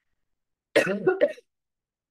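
A woman gives a short cough in three quick pulses, about three-quarters of a second in, with near silence around it.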